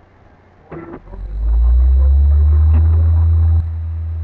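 A few knocks, then a loud, steady low hum that sets in about a second in. It drops in level shortly before the end and carries on.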